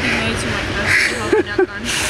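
A woman speaking in short, broken fragments, with steady street traffic noise behind her.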